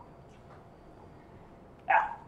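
Quiet room tone in a pause between sentences, with a faint steady high hum, ending with a man saying "yeah".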